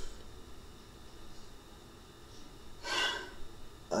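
One short breath from a person into a close microphone about three seconds in, over faint room tone.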